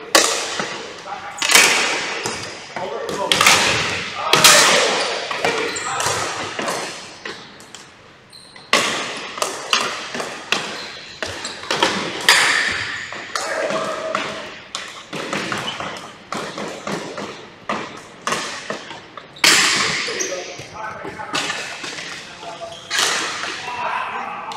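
Ball hockey play in a gym: irregular sharp clacks and thuds of sticks striking the ball and the hardwood floor, each echoing in the large hall, with players' voices in between.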